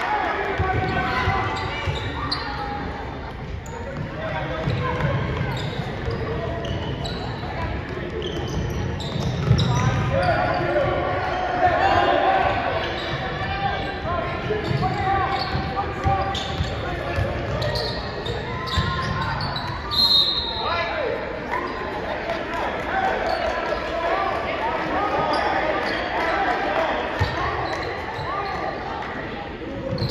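Basketball bouncing on a hardwood gym court during play, amid voices of players, coaches and spectators echoing in a large gym. A short high squeak comes about twenty seconds in.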